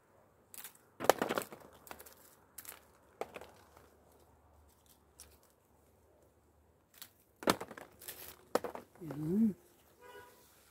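Plastic hand rake combing through olive branches to strip the olives: short bursts of leaves rustling and crackling, a few strokes near the start and again later, with a quiet stretch between. Near the end comes a brief hummed vocal sound, rising and falling in pitch.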